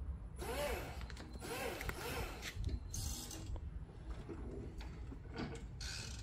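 Toyota Geneo-R electric reach forklift moving: a steady low hum, with mechanical squeaks and creaks that rise and fall in pitch over the first couple of seconds, and several short hissing bursts.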